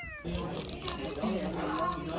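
The falling tail of a cat's meow, cut off abruptly a moment in, followed by the steady murmur of people talking in the background.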